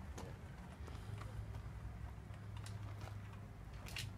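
Faint, scattered light clicks and knocks of small bicycle parts being handled during assembly of a child's bike, over a low steady hum.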